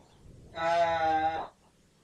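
A single drawn-out hesitation filler 'ờ' (uh) in a human voice, held at a steady pitch for about a second, starting about half a second in.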